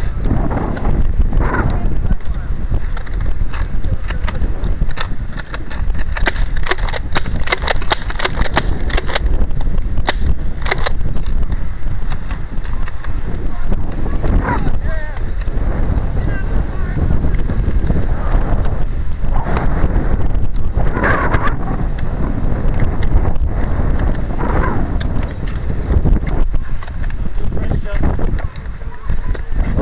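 Heavy rumble of wind and handling on a body-worn camera microphone while the wearer runs. A quick series of sharp clicks comes from about a quarter of the way in until nearly halfway through.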